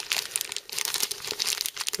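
Small clear plastic zip-top bag of cooler mounting hardware crinkling and crackling irregularly as it is handled.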